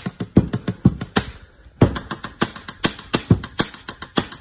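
Pen tapping on a wooden tabletop, played as a drum beat: a fast rhythm of sharp clicks broken by stronger, deeper knocks, with a short lull about one and a half seconds in.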